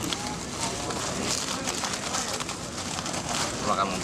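Indistinct chatter of a group of people, with rustling of a cloth sack being handled.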